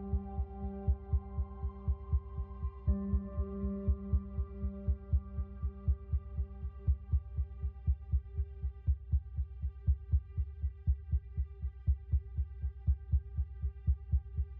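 Background music: a low, regular pulse of about two beats a second, like a heartbeat, under held steady tones. The lowest held tone drops out about halfway through.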